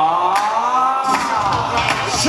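A male singer holding one long sung note through a microphone and PA, the pitch climbing slightly and sinking back, with the band's bass dropped out beneath it.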